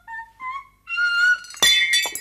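A high voice sings a short run of notes up to a long held high note, then glass shatters with a sharp crash and a few tinkling clinks of falling pieces.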